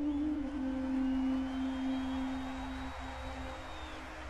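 Balaban, the Azerbaijani double-reed wind instrument, holding one long low note that slowly fades at the end of its melody.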